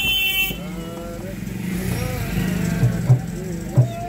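Street traffic heard from inside a car: a vehicle horn sounds until about half a second in, followed by voices and a few short low thumps.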